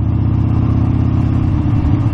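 Harley-Davidson motorcycle's V-twin engine running at a steady pace while riding, heard loud from on the bike.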